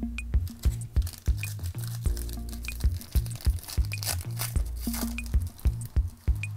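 Background electronic music with a steady bass and beat. Over it, from about a second in until near the end, a foil trading-card pack wrapper crinkles as it is torn open and the cards are pulled out.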